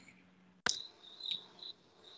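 A faint, steady high-pitched whine on a video-call audio line, with one sharp click about two-thirds of a second in and a couple of faint brief blips after it.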